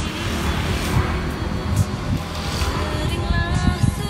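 A motor scooter passing close by: its engine noise rises over the first second and dies away by about three seconds in, over background pop music.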